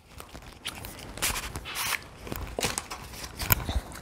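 Cosmetic packaging being handled: a few short rustles of plastic or cardboard and scattered small clicks, with a sharper click about three and a half seconds in.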